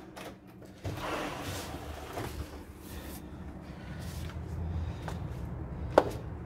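Rumble and rustle of a handheld phone being carried while walking, with a sharp click near the end.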